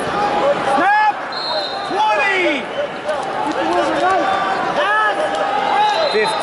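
Arena crowd noise with shouted voices over it. Several short rising-and-falling squeaks come through, about a second in, around two seconds and around five seconds, typical of wrestling shoes on the mat as two heavyweights hand-fight.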